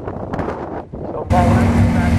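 Drag race car engine running at the starting line, uneven and noisy at first. A little past halfway the sound jumps abruptly to a louder, steady engine drone.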